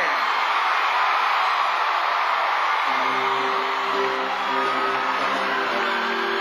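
Studio audience cheering and whooping, with the band coming in about three seconds in on a held, sustained chord.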